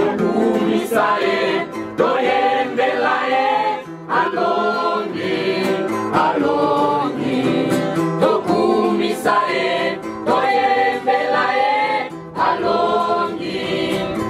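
A group of young voices singing a gospel hymn together in chorus, in phrases with brief breaths between them.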